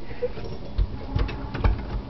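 A raw turkey being worked by hand in a stainless-steel sink: three short, soft thumps of the bird knocking against the sink in the second half.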